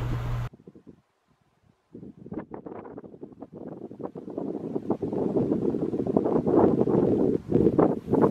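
Wind buffeting an outdoor microphone, in irregular gusts with crackling, starting about two seconds in and growing stronger toward the end.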